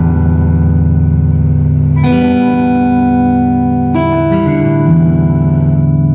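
Electric guitar chords played through a Blackface Fender Princeton Reverb tube amp with its spring reverb turned up. Each chord rings out for about two seconds before the next is struck, with no crashing from the reverb: the reverb circuit works with its new reverb driver transformer.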